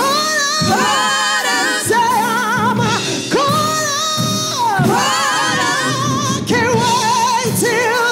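Live gospel singing by a woman with backing singers and a band: long held notes with a heavy, wavering vibrato and pitch slides between phrases.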